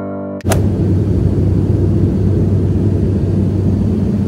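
A piano chord cuts off with a click, then a loud, steady, low engine rumble with a deep hum.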